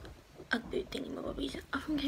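A woman speaking softly in a whisper.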